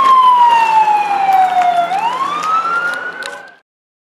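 A siren wailing: its pitch falls slowly, then rises again, and it cuts off suddenly near the end.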